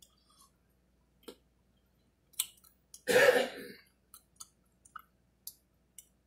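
A person coughs once, about three seconds in, while eating ice cream, with soft wet mouth clicks and smacks scattered before and after.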